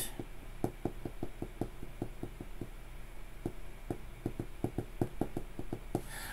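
Soft, irregular clicks and taps, a few a second, over a steady low hum.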